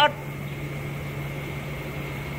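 Steady mechanical hum of a rabbit shed's ventilation exhaust fans, a constant low drone with a faint high whine over it.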